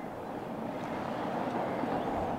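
A car passing on the street: a steady hiss of tyres and engine that slowly grows louder as it approaches.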